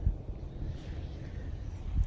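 Low, uneven rumble of wind on the microphone outdoors, with one sharp thump just after the start.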